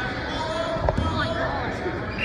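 Background talk from spectators echoing in a gymnasium, with a dull thud a little before one second in.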